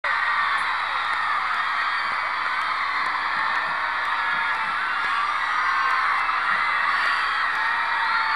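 Large concert crowd screaming and cheering, a steady wall of many high-pitched voices overlapping.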